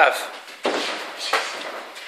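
Two sharp slaps about two-thirds of a second apart: boxing gloves landing during junior sparring, with a short ring of the small room after each.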